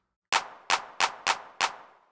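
Hand clap drum sample in FL Studio, triggered five times in a steady rhythm of about three claps a second. Each clap is a sharp crack that dies away quickly.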